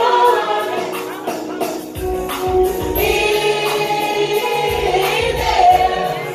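A church choir singing a gospel song in held, harmonised lines over live accompaniment. A bass line comes in about two seconds in, with a steady high percussion beat.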